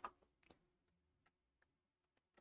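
Near silence: room tone with a few faint, short clicks spread irregularly through it.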